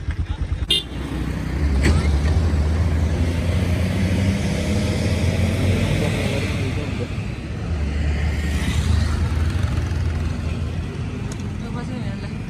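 Motorcycle engine running steadily while riding, with wind noise on the microphone; the engine drone swells twice, once early and once later on.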